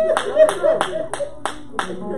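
Hands clapping at a steady beat, about four claps a second, with voices calling out under the claps in the first second.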